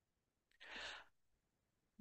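Near silence, broken by one short, faint breath from a man, about half a second in.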